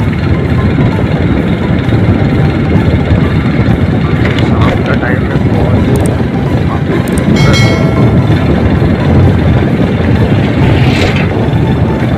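Heavy wind buffeting on the microphone over the steady rumble of a motorcycle and its tyres riding along a road.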